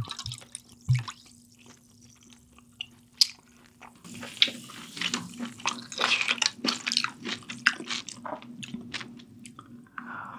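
Makgeolli being poured from a plastic bottle into a metal bowl: liquid splashing and dripping. The sound grows louder and busier from about four seconds in, with many small clicks.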